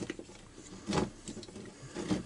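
A few light clicks and knocks of hard plastic as the throttle trigger of an Echo SRM-22GES trimmer is handled and seated in its plastic control-handle housing, the clearest knock about a second in.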